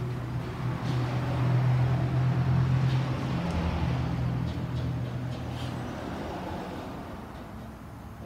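A motor vehicle's engine running close by, with a deep steady hum. It is loudest about two seconds in and then fades away, as if driving off.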